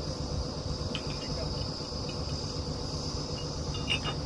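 Truck-mounted borewell drilling rig's engine running steadily with a low drone, a steady high-pitched whine above it, and a couple of light metallic clinks at the drill head, one about a second in and one near the end.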